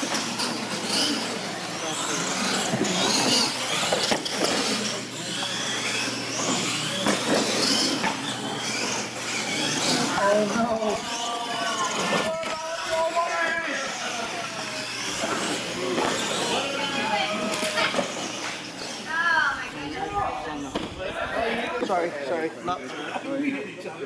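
Radio-controlled monster trucks racing on a concrete floor, their motors and tyres running under people talking in the background, with a few knocks.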